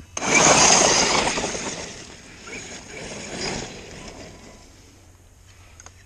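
8S brushless Losi DBXL-E 1/5-scale electric buggy launching hard and driving away, its tyres churning snow-dusted grass. A sudden rush of tyre and debris noise, loudest in the first second, fades as the buggy pulls away, with a smaller swell about three seconds in.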